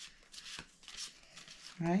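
A stack of game cards being shuffled and handled by hand: a run of short, irregular rustling strokes.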